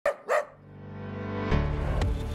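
Two short dog barks, one right after the other, followed by music that swells up and comes in fully about one and a half seconds in.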